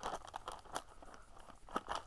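Cardboard Lego box being pushed open at its perforated tab: scattered small crackles of the card, with a sharper click near the middle and another near the end.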